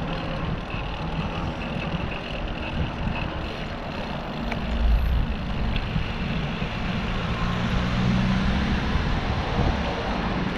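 Steady road traffic noise from vehicles running on the road beside a cycle track, heard from a moving bicycle. There is a louder low rumble about halfway through.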